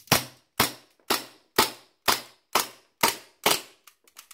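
WE Mauser M712 gas blowback airsoft pistol firing eight evenly spaced shots, about two a second. It is running on the last of the gas in a cold magazine that was not topped up: every BB fires, but there is not enough gas to lock the bolt open after the last shot near the end.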